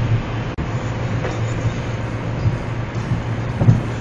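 Cabin noise of a Seat Cordoba driving at about 120 km/h on a wet highway in heavy rain: a steady low drone with road and rain hiss. There is a short thump about three and a half seconds in.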